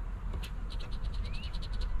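A coin scraping the coating off a scratch-off lottery ticket: one light click, then from about half a second in a rapid run of short scratching strokes.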